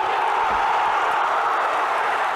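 Football stadium crowd making a loud, steady roar that swells just before and holds, reacting to a chance near the goal.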